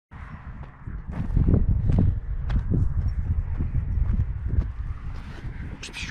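Irregular thuds and rustles of footsteps and movement on dry grass, over a steady low rumble.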